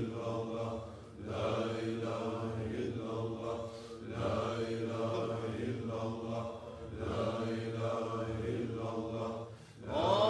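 Sufi dervishes chanting zikr together in unison. The same phrase repeats about every three seconds, with a brief break between phrases.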